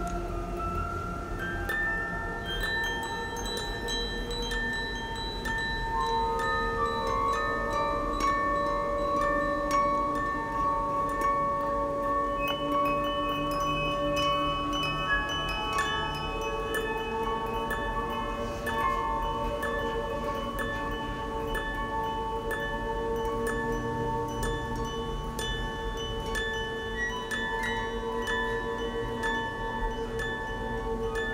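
Film soundtrack music of long, overlapping chime-like tones. The tones hold and shift pitch slowly, with no beat.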